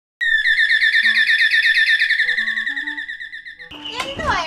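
A bird chirping in a fast, even trill that starts suddenly and slowly fades. Under it, a few soft low music notes step from one pitch to the next.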